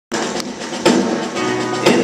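Live band opening a song, led by strummed acoustic guitar, with a few sharp strums standing out over sustained chords.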